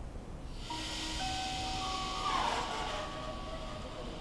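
An NS Mat '64 Plan T electric trainset standing at the platform before departure: a sudden hiss of air starts about half a second in, with several steady whistling tones over it.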